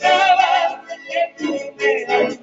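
Live band music with a lead singer, amplified over an open-air stage sound system. One sung phrase begins at the start and breaks off about halfway, and a new phrase comes in near the end.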